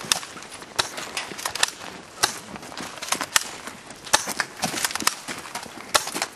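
Airsoft guns firing, a run of sharp, irregular cracks, several a second.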